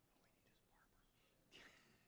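Near silence with faint whispered speech, and a brief louder hissing noise about one and a half seconds in.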